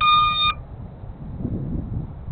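A short electronic beep, about half a second of one steady pitched tone, from FPV drone gear after a telemetry alert, followed by low wind rumble on the microphone.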